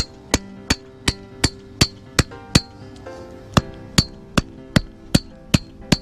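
Hammer driving a short scrap-lumber wooden stake into garden soil, steady blows about three a second, each with a slight ring, with a brief break about three seconds in.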